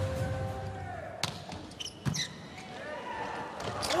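Crowd noise in a large volleyball arena, with a volleyball smacked sharply twice, about one and two seconds in.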